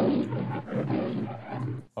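A long, rough roar like a big cat's, pulsing unevenly, that stops abruptly near the end and sounds duller than the voices around it.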